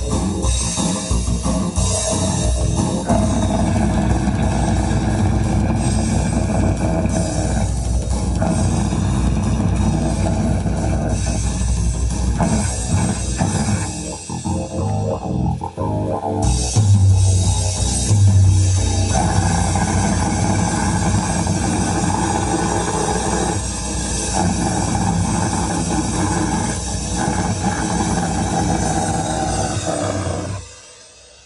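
Live band playing loud electric guitar, bass and drums, heard from the audience in a small club. The band thins out briefly about halfway through, then comes back in with a heavy low-end hit.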